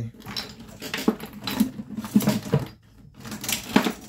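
Irregular light clicks and clatter of a plastic phone charger and its cord being handled on a hard table, with a few sharper knocks after about two seconds and again near the end.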